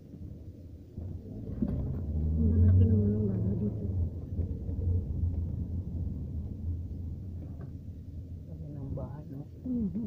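Low, steady rumble of a car driving, heard from inside the cabin, with indistinct voices in the background.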